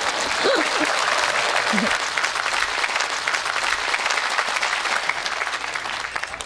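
A large audience applauding, with a little laughter in the first couple of seconds, the clapping thinning out near the end.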